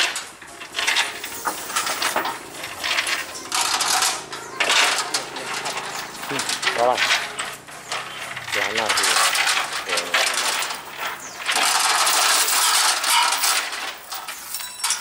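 Steel hoist chains rattling and clinking in a long run of metallic clanks as a chain hoist is hauled and the chains knock against a steel lifting frame.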